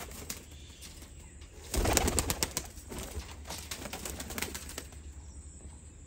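Pigeon's wings clattering as it is let go and takes off: a loud burst of rapid wing beats about two seconds in, then fainter flapping.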